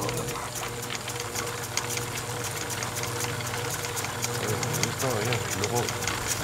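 Small electric motor running with a steady hum and a rapid, even crackle of ticks.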